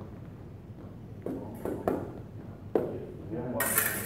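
Sport sabre blades clinking together in a few sharp separate strikes, then a louder, longer metallic clash near the end.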